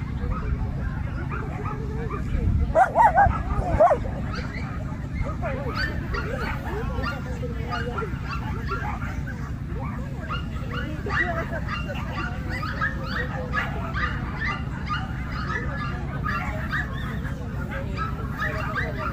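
Dogs barking, with a loud burst of high, yapping barks about three seconds in and more barking scattered through the rest. People talk in the background over a steady low rumble.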